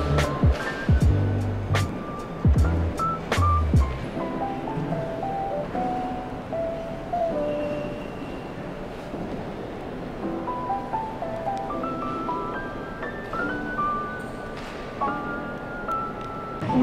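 Background music: an instrumental track with a melody of held notes stepping up and down, over low bass notes and percussion hits that drop out about four seconds in.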